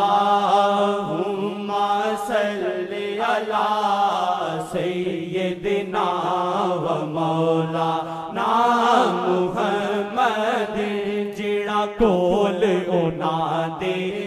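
A naat sung in Punjabi: one voice holding long, ornamented lines over a steady low drone.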